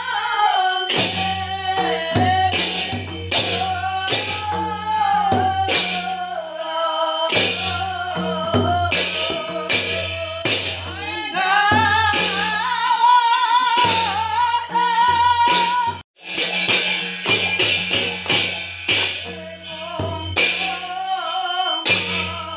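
Devotional aarti being sung by voices over a hand-played barrel drum and percussion strokes. The sound cuts out for an instant about two-thirds of the way through.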